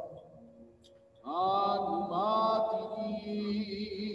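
A solo voice chanting a slow liturgical melody in long held notes. It starts a new phrase a little over a second in, after a brief lull.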